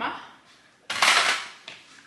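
A plate set down on the counter with a clatter about a second in, followed by a few lighter clinks of dishes and cutlery being handled.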